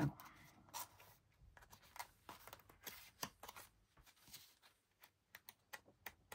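Paper pages of a handmade junk journal being handled and turned: soft, scattered rustles and light paper taps throughout.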